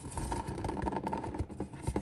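A cardboard box being worked open by hand: irregular scraping, rubbing and small knocks of the cardboard as the lid is eased off.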